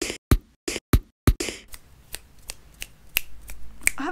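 Drum samples triggered from the pads of the Koala Sampler app: a handful of loud, sharp kick and snare hits in the first second and a half, then a lighter, snappy hit repeating about three times a second while the snare sample is pitched down.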